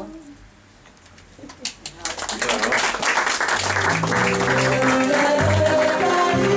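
A quieter second, then a few claps about one and a half seconds in and applause from about two seconds. Accordion music with a pulsing bass line comes in over the applause a little past halfway.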